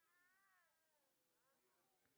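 Near silence, with only very faint wavering tones.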